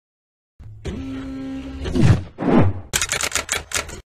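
Electronic end-card sound effects: a held low hum, then two deep falling swoops, then a quick run of about eight sharp clicks in a second.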